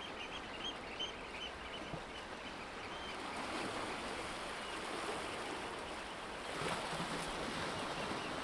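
Sea surf washing against rocks and a shingle beach, a steady wash that swells slightly near the end. Faint high chirps come through in the first few seconds.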